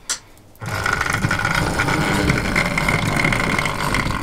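Model locomotive's small electric motor running with wheels rumbling on the rails, a steady whine that starts about half a second in after a single click. The engine is running again after a service.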